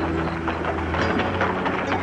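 A fast, even rhythmic clatter of repeated beats over a steady low musical drone.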